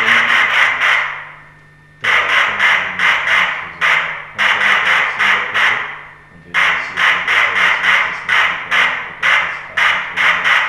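MNG-300 Skeller+ mobile noise generator putting out loud masking noise: a hiss chopped into rapid pulses, about four to five a second, in runs of one to two seconds with brief breaks.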